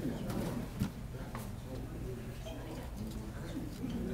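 Faint, low murmur of voices in a room, with a few light knocks and clicks.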